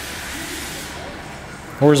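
A steady hiss of background noise, thinning slightly in the second half, until a man starts speaking near the end.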